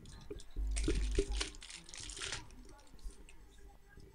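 Clear plastic packaging bag crinkling and rustling as it is handled and opened, with a low bump of handling at the start; it tails off into a few small ticks and rustles.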